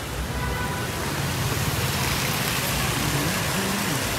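Steady outdoor street noise from road traffic, an even hiss that grows slightly louder about halfway through.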